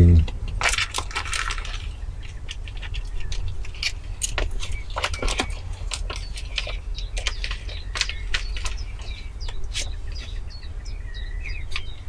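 Small red box handled in the hands: scattered light clicks and rustles, irregular and short, over a steady low rumble.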